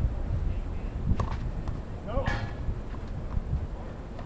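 Low wind rumble on the microphone, with faint distant voices, a sharp knock about a second in and a brief call a little past the middle.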